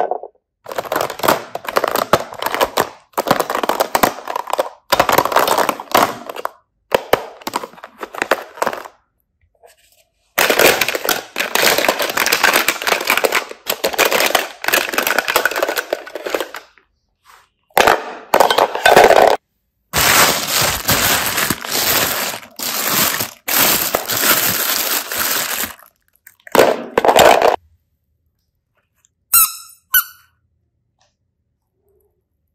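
Plastic toys and cases clattering and rattling as a hand rummages through a plastic basket full of them, in bursts several seconds long with short pauses. It stops a couple of seconds before the end.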